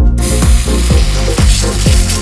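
Aerosol can of whipped cream topping spraying, a continuous hiss that starts just after the beginning as the cream is piped out. Background music with a beat plays underneath.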